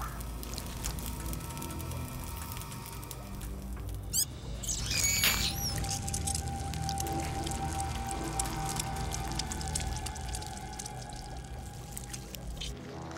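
Eerie synthesized film score: a steady low drone, a brief cluster of high warbling, gliding tones about four to five seconds in, then a single held note to the end.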